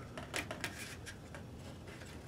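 A ballpoint pen scraping and tapping in a clear plastic tray, scooping up mixed epoxy glue: a few short, faint scrapes clustered in the first second.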